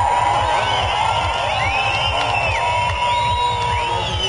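Goa psytrance dance music with a steady kick drum and swooping synth lines, with a festival crowd cheering and whooping.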